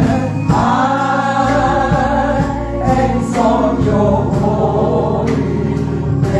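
Gospel praise team of men and women singing together into microphones, holding long notes.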